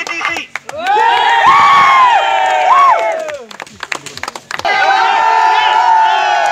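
A crowd cheering in two long drawn-out shouts of many voices, the first rising about a second in and fading after three seconds, the second starting near the five-second mark, with scattered hand claps throughout.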